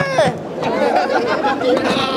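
Crowd chatter: many voices talking over one another, with someone exclaiming "Wow!" near the end.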